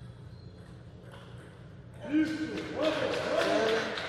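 Loud shouting in celebration as a table tennis point is won: it starts suddenly about halfway through, with drawn-out yelled voices over the hall's quiet background.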